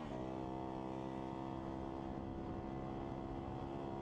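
Motor scooter engine running while riding at a steady speed, its pitch rising briefly at the start and then holding level.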